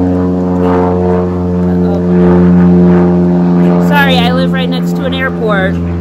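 A loud, steady motor drone holding one low pitch, with a woman's voice over it in the last two seconds.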